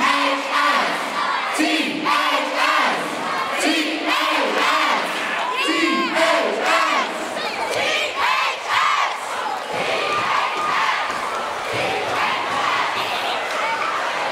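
Large crowd of students shouting a cheer together in rhythmic bursts about every two seconds, led by cheerleaders, running on into looser cheering and yelling in the second half.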